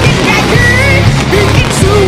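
Loud rock music with distorted guitars, bass and drums, and a melodic line that bends in pitch.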